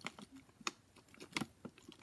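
A thin plastic water bottle handled in the hand, giving a few faint, irregular clicks and crackles as the plastic flexes.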